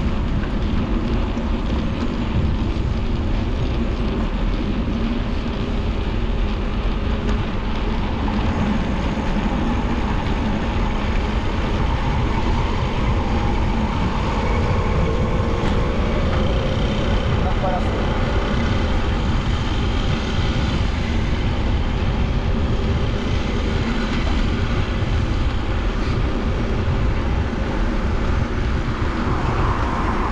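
Wind rushing over a handlebar-mounted action camera on a moving bicycle, a steady low roar, with the hum of car traffic in the lanes alongside.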